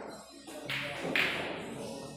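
Pool balls clicking sharply on the tables, two knocks close together about a second in, over background music.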